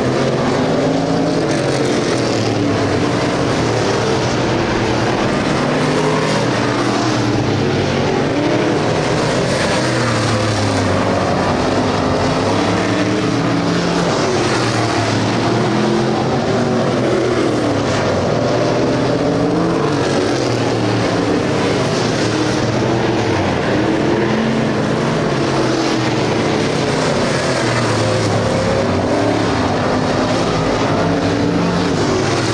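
Several dirt-track street stock race cars' engines running together, loud and continuous, their overlapping pitches rising and falling as the cars go around the track.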